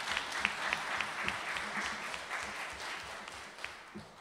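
Audience applauding after a talk, a dense patter of clapping that thins and fades away near the end.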